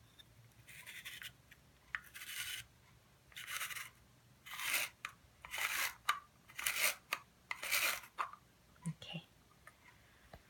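Handheld spiral slicer cutting zucchini into thick noodles: about seven crisp scraping strokes, roughly one a second, as the zucchini is twisted against the blade with the cap. A couple of light knocks near the end.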